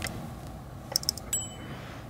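Subscribe-button animation sound effect: a few soft mouse-style clicks about a second in, then a click and a brief high bell ding.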